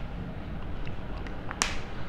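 A single sharp click about one and a half seconds in, with a few faint ticks before it, over a low steady room hum.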